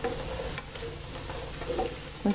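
Cashew nuts and raisins frying in shallow oil in a non-stick pan: a steady sizzle, with light scrapes and clicks as a spatula stirs them.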